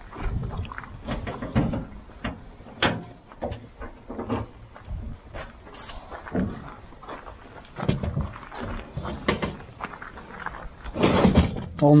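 Scattered clicks, clunks and knocks of a car boot lid being opened and a plastic storage crate being handled and its lid unclipped, with a voice starting near the end.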